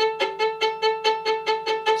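Violin bow bouncing on the string in a slow spiccato practice stroke, repeating one note about five times a second. The bow's natural bounce is kept going by gently opening the elbow, and it doesn't sound that pretty.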